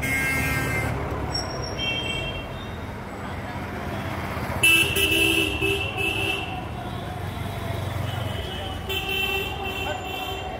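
City street traffic: engines rumbling with car horns honking several times, the loudest blast about five seconds in and held for over a second.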